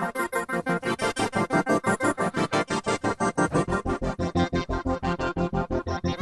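Waldorf Microwave XTK wavetable synthesizer playing a fast, evenly pulsing chord pattern of about eight notes a second. A deep bass comes in about a second in and grows stronger toward the end.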